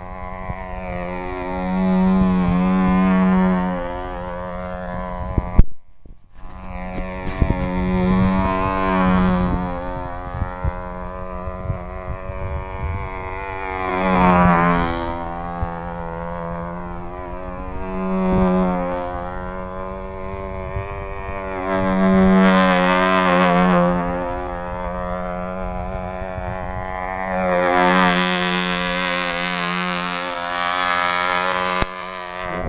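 Small glow-fuel model engine of a control-line stunt plane running steadily in flight, its buzzing note swelling and fading about every five seconds as the plane passes on each lap. The engine is set rich, which a flyer calls still too rich. The sound drops out briefly about six seconds in.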